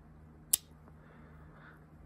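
A single sharp snap about half a second in: a blade of a stag-handled Parker-Frost canoe pocket knife snapping on its backspring. The action is stiff, still needing to be broken in.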